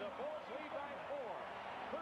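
Faint audio of a 1989 NBA television broadcast: a commentator's voice, quiet and in the background, over steady arena crowd noise.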